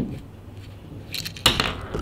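Small clicks and clinks from the threaded metal tip of a cigarette-lighter power plug being unscrewed to get at the fuse inside: one sharp click at the start, then a few more clicks about a second and a half in as the tip comes off.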